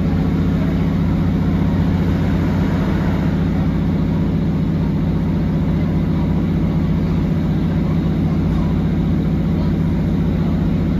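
Underfloor diesel engine of a Northern Class 150 Sprinter diesel multiple unit, heard inside the carriage as a steady, even low drone with no rise or fall in pitch.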